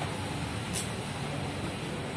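A vehicle engine running steadily with a low hum, and one short click about three-quarters of a second in.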